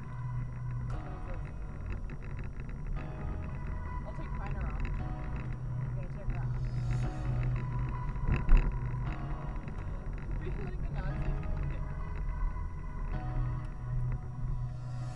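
A song with vocals playing over the car's stereo inside the cabin, over the low rumble of the moving car. A single sharp thump about eight and a half seconds in.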